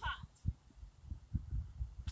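A woman's voice through a small portable speaker ends a phrase, then a few irregular low thumps sound on the recording microphone while she pauses.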